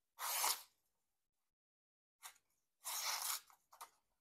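A Null Knives Voodoo folding knife's M390 steel blade slicing through sheets of paper: two cutting strokes of about half a second each, one just after the start and one about three seconds in, with a few short scratches between and after.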